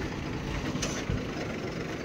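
Dump truck engine running steadily at idle close by, a low rumble, with one short click just under a second in.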